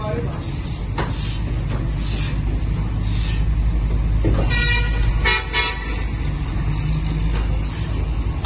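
Karate sparring: a few sharp slaps of kicks and punches landing on gi and body over a steady low rumble. About halfway through, a short pitched honk sounds twice.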